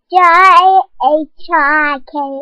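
A young girl singing: one long wavering note, then a short note and another held note.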